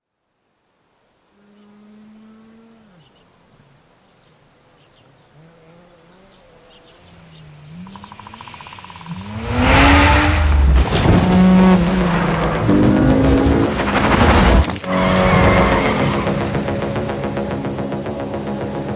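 A car engine revving, faint at first and rising and falling, then loud from about halfway: the engine pulls up in pitch over tyre squeal as the car drifts, and the noise cuts off suddenly near the end. Steady sustained music tones follow.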